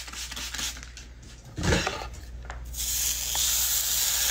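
Steady hiss and sizzle of steam as a wet-to-straight flat iron is pulled through wet hair, starting after a short low thump about halfway through.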